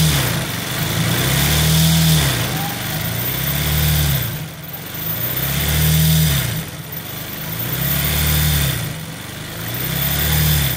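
Sewing machine doing free-motion embroidery: its motor runs in repeated bursts about every two seconds, each rising in pitch as it speeds up and then falling away as it slows.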